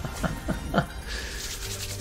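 Online slot-machine game sound effects: three quick falling tones, then a bright, shimmering jingle with a fast flutter from about a second in as a free-spin win is tallied up.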